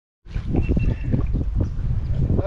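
Small hooked crappie splashing at the water's surface as it is reeled toward the boat, over steady wind rumble on the microphone.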